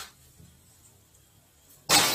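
Near silence, after the fading end of a clink at the very start. Close to the end comes a sudden, loud rustle of cardboard packaging being handled.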